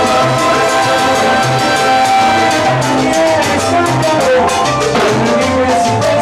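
A salsa orchestra playing live: a steady, dense groove of repeated bass notes and hand-drum and timbale strokes, with sustained melodic lines held over it.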